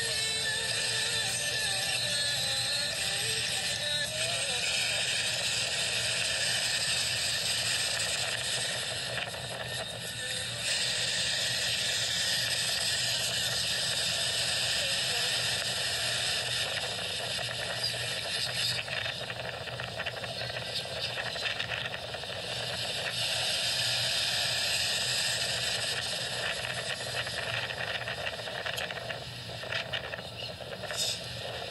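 Steady rushing beach noise of wind and surf on a phone's microphone, dipping briefly about ten seconds in.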